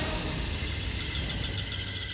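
Background music score of sustained held tones over a steady low drone.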